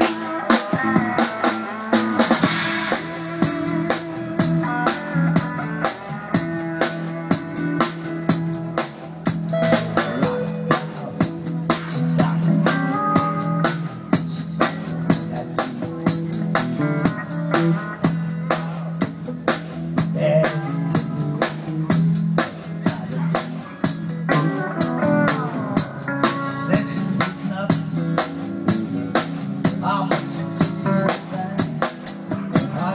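Live band playing an upbeat groove: steel drum melody over a drum kit keeping a steady beat, with guitar and bass.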